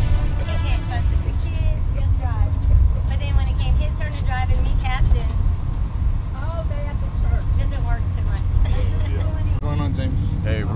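Steady low rumble of a school bus's engine and road noise, heard from inside the moving bus, with voices talking over it.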